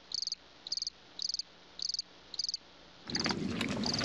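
Crickets chirping: five short, high-pitched pulsed chirps, about two a second. About three seconds in, a steady rushing noise takes over.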